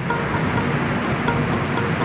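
Steady noise of city road traffic outdoors.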